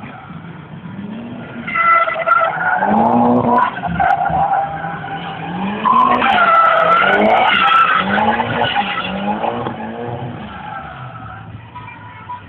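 Drift car sliding sideways with its tyres squealing, the engine revving up and down again and again as the driver works the throttle. It gets loud about two seconds in and fades near the end.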